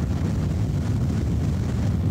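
Strong wind buffeting the microphone: a steady low rumble with a hiss above it.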